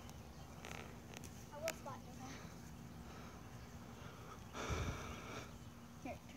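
Faint wordless voices over a low, steady outdoor background, with a short burst of noise about five seconds in.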